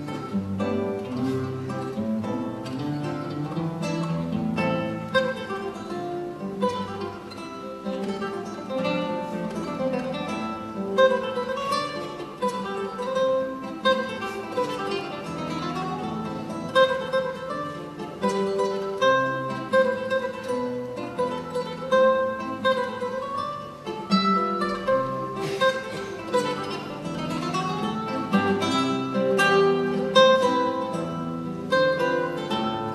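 Solo classical guitar played fingerstyle: a waltz, with a plucked melody over bass notes and quick runs of notes.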